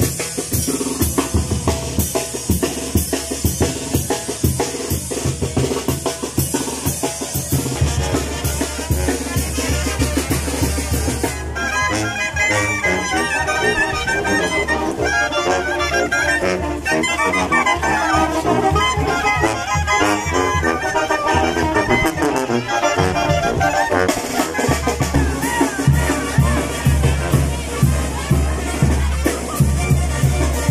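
Brass band music with drums: the drums play alone for the first ten seconds or so, then the brass comes in with the tune over the beat.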